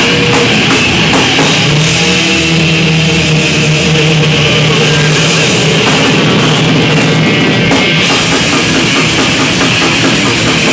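Thrash metal band playing live: distorted electric guitar, bass and drum kit, steady and very loud with no break.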